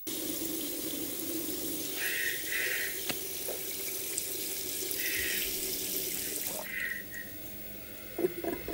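Water running from a tap into a bathroom sink, a steady rush that drops off about seven seconds in.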